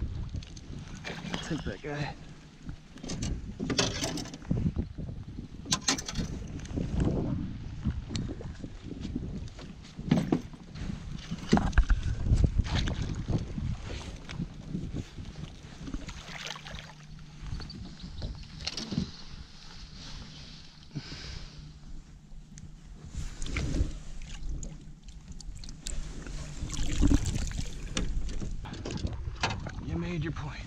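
An alligator gar splashing at the surface as it is pulled to the side of an aluminum jon boat. Scattered knocks and thumps against the hull follow as the fish is lifted aboard.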